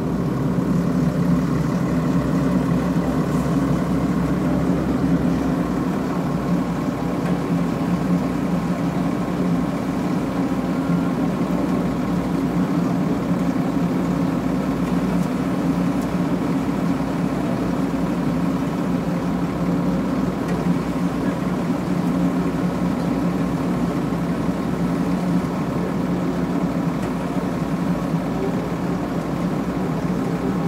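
A heavy diesel engine running steadily at low revs, a constant hum with no revving, heard from inside an excavator cab.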